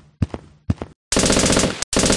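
Gunfire sound effects: two single shots about half a second apart, then a rapid machine-gun burst lasting about a second, broken once briefly near the end.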